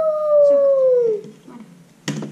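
A young child's voice giving one long howl-like 'ooooh': the pitch has just swept up steeply and is held high, sliding slowly down until it stops a little over a second in.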